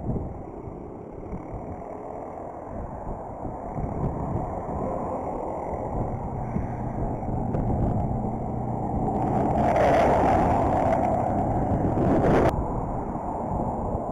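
Wind rumble and tyre noise of a BMX bike rolling along a concrete sidewalk, with motor traffic passing on the road alongside. A louder hiss builds from about nine seconds in and cuts off suddenly about three seconds later.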